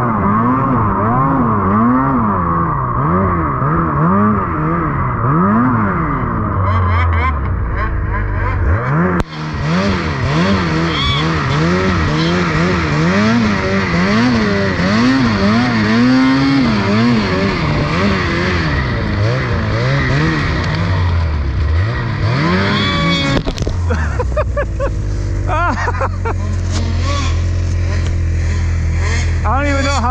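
Ski-Doo Freeride 850 Turbo snowmobile's two-stroke twin engine revving up and down again and again as it pushes through deep, heavy wet snow.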